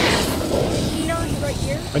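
Wind rumbling on the camera microphone on a moving chairlift, with a gust at the start, and faint voices about a second in.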